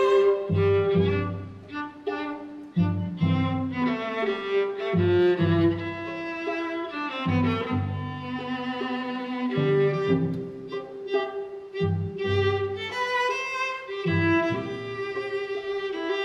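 Live string trio, two upper strings and a cello, playing a classical piece with bows. The cello's low notes come and go in short phrases beneath longer held notes from the upper strings.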